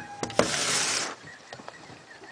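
A pet clambering in through a window: a couple of sharp knocks, then a half-second rustling burst close to the microphone, followed by a few faint ticks.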